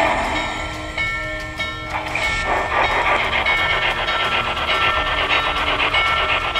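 Steam locomotive running sounds from the ProtoSound 3.0 sound system of an MTH HO-scale Norfolk & Western J Class model as it runs on the track: a continuous steam and rail noise with a few steady high tones over it.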